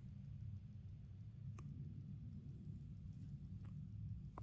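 Quiet room tone: a steady low hum, with one faint click about a second and a half in.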